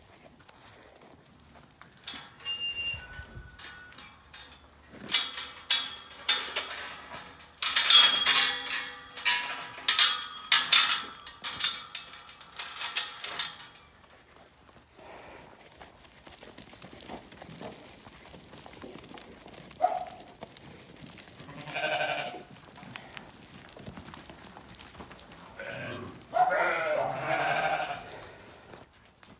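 A flock of sheep moving through pens. A run of loud clattering and knocking lasts for several seconds in the first half, and sheep bleat a few times in the second half, with one longer call near the end.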